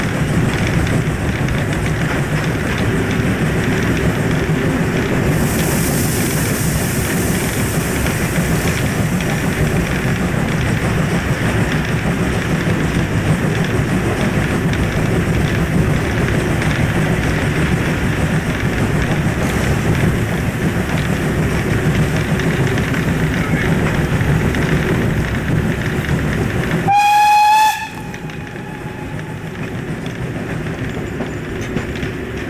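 Class 52 steam locomotive running, heard from its footplate: a steady rumble of the engine and the wheels on the rails, with a high hiss for about three seconds some six seconds in. Near the end, one short, loud blast on the locomotive's steam whistle.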